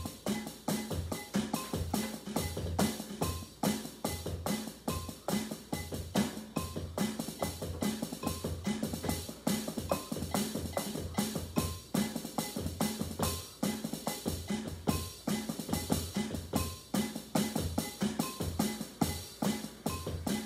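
Drums played with sticks in a loud, steady rock groove: a repeating pattern of bass-drum thumps under snare and rim hits at an even tempo.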